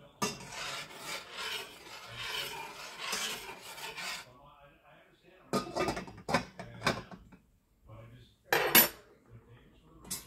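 Cookware handling on a stovetop: a few seconds of scraping in an uncovered stainless saucepan of rice, then clinks as its glass lid is set back on. Near the end comes a sharp metal clank, the loudest sound, as the lid of the chicken frying pan is lifted.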